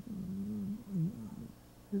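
A man's quiet, wavering hum through closed lips, a hesitant 'mmm' as he searches for words mid-sentence. It dips briefly about a second in.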